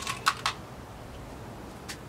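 Small glass beads clicking together as they are handled: a few quick clicks in the first half-second and one more near the end.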